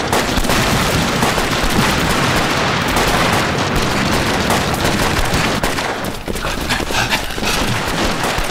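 Dense, continuous battle gunfire from a film soundtrack, many rifle shots overlapping in rapid succession, thinning slightly about six seconds in.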